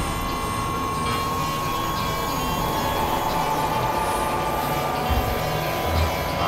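Dense layered mix of several music tracks and noise playing at once, a rumbling noisy texture with a steady held tone through it; low thumps come about five seconds in and again at the end.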